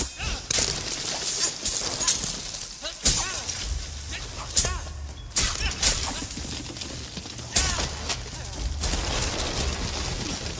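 Animated-film sound effects of destruction: a run of about ten sharp cracking, shattering crashes over a low rumble that comes in about a third of the way through.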